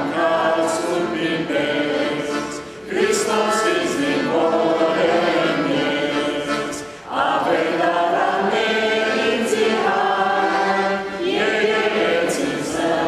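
Sung church chant: held, melodic vocal phrases a few seconds long, with short pauses about three seconds in, about seven seconds in and near the end.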